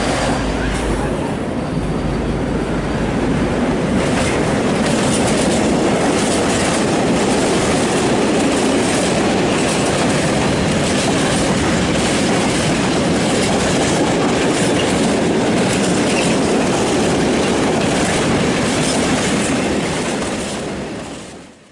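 M62 diesel locomotive's two-stroke V12 engine rumbling as it passes close by in the first few seconds, then a long train of tank wagons rolling past with a steady clatter of wheels over the rail joints.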